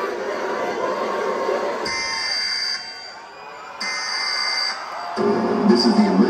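Arena crowd chatter, then two electronic alert tones about two seconds apart. A steady low alert drone starts about five seconds in: the opening of an emergency-broadcast-style alert played over a concert PA.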